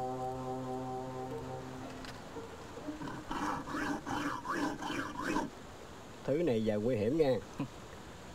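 A sustained film-score chord fades out about two seconds in. Then comes a man's chuckling, and near the end a short line of low male speech in Vietnamese.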